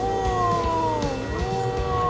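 Electronic test tones from a sound-wave exhibit's speaker driving a liquid-filled glass tube: a steady tone held under a second pitched tone. The second tone falls in three slow downward glides of about a second each, as the frequency knob is turned.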